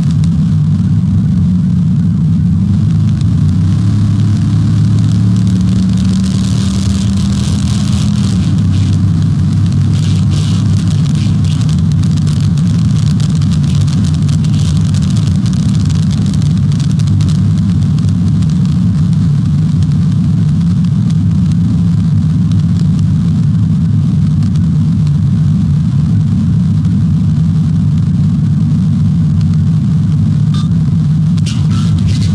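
Police patrol car driving flat out at over 100 mph: a steady drone of engine, road and wind noise, with the engine note shifting several seconds in.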